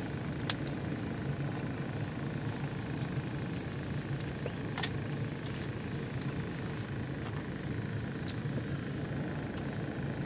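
Steady low rumble of an idling car, with a few light clicks over it.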